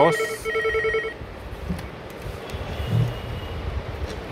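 An electronic telephone ring: a fast warbling trill in two short bursts during the first second, then only low background noise.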